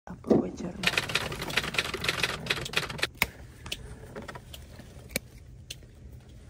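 Steel grape-picking shears snipping and trimming a bunch of table grapes. A quick clatter of small clicks and rustling runs for about two seconds, then come about five single sharp snips, roughly one every half second to second.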